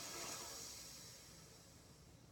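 A person breathing out deeply during a yoga pose, a breathy rush that fades away gradually.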